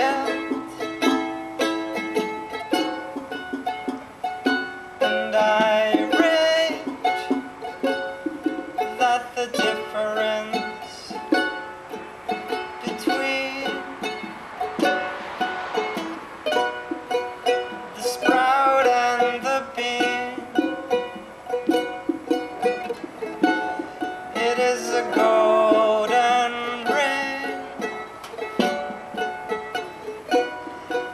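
Acoustic band music: a charango plays over double bass and junk percussion with a steady beat.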